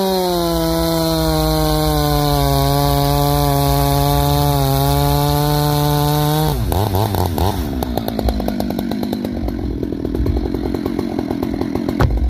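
Husqvarna 575 two-stroke chainsaw with a modified, opened-up muffler, held at full throttle in a cut through a pine log, its pitch steady and sagging slightly under load. About six and a half seconds in the cut finishes and the throttle drops, and the engine falls to a lower, uneven running speed.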